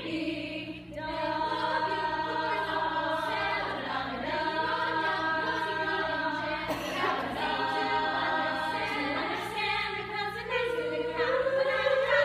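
Women's choir singing in harmony, several voices holding chords, with a brief break in the sound about a second in.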